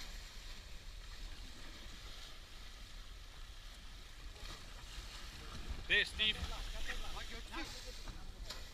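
Wind rumbling on the microphone over the wash of the sea around an inflatable boat. From about six seconds in, people shout several short calls.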